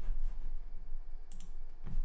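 Computer mouse clicking: a few short, sharp clicks, a pair about one and a half seconds in and another near the end.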